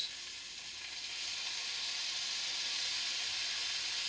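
Sausages, onions and mushrooms sizzling in a frying pan: a steady frying hiss that grows louder about a second in and then holds.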